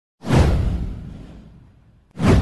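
A whoosh sound effect with a deep low boom that comes in suddenly, slides downward in pitch and fades away over about a second and a half.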